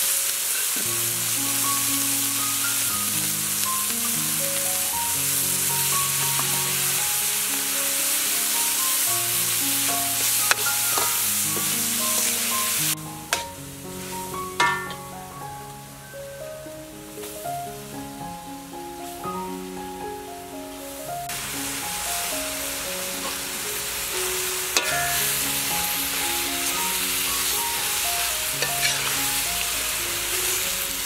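Minced pork sizzling in a steel wok as it is stir-fried with a metal spatula, with a few sharp scrapes and knocks of the spatula on the pan. The sizzling drops away for several seconds around the middle, then comes back as the pan is stirred again, with leafy greens in it near the end.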